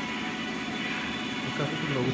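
Gym background sound: music playing with people talking quietly, and no clank of the bar or other impact.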